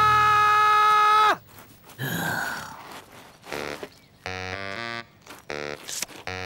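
An old woman's long, loud held yell, which drops in pitch and cuts off just over a second in. After it come short cartoon sound effects: a brief falling glide, then a few quick runs of stepped, pitched tones.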